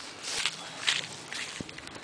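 A few soft rustling footsteps in dry grass, about half a second apart.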